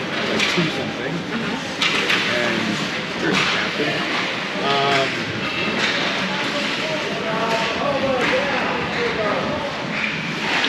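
The sound of a youth ice hockey game in a rink: many indistinct voices of players and spectators talking and calling out at once. Sharp clacks of sticks and puck come through at irregular moments.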